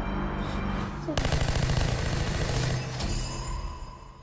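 A burst of rapid automatic gunfire from the trailer soundtrack over dramatic score. It starts about a second in and dies away near the end.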